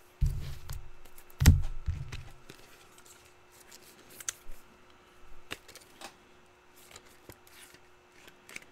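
Trading cards and packs being handled on a table: two heavy thumps in the first two seconds, then scattered light clicks and rustles.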